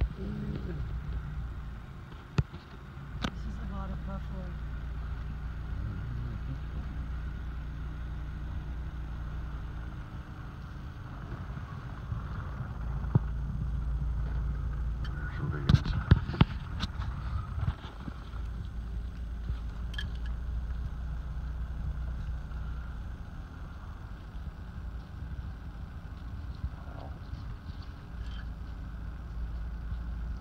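Steady low hum of a car running at slow speed, heard from inside the cabin, with a few sharp knocks about halfway through.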